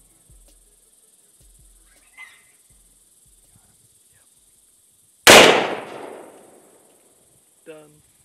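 A single .308 rifle shot about five seconds in, loud and sudden with a long echoing tail. A short pitched cry follows near the end.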